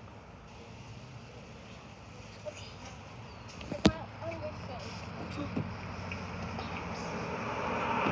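A single sharp knock about halfway through, then the noise of a car on the street rising steadily toward the end.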